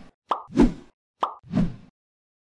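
Cartoon sound effects for an animated subscribe-button tap: two short clicks, each followed by a soft pop, about a second apart.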